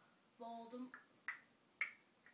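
Ticking sound effect for the puppet show: sharp single clicks about half a second apart, two of them in the second half, after a brief hummed voice sound near the start.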